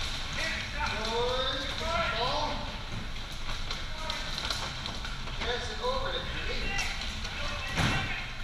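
Players' voices calling and shouting across a large, echoing hall, with music playing and scattered knocks from the bumper cars and ball. A sharp, loud knock comes just before the end.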